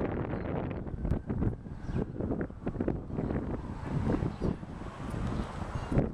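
Wind buffeting the camera's microphone: an uneven, gusting noise.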